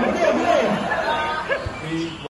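Chatter of several people talking over one another in a room, with no music.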